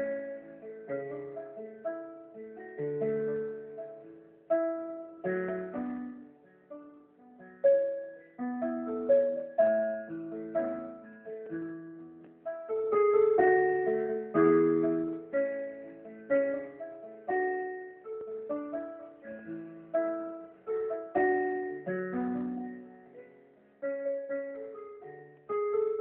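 Portable electronic keyboard played by hand: chords and melody notes struck one after another, each fading away, with no drum beat.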